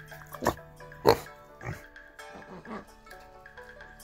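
Pig grunting close to the microphone: two short loud grunts about half a second and a second in, with a softer one a little later, over light background music.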